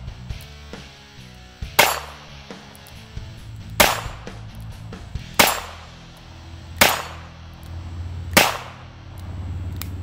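Five single shots from a Smith & Wesson 317 Kit Gun, a lightweight .22 LR revolver, fired one at a time about every one and a half to two seconds. Background music plays underneath.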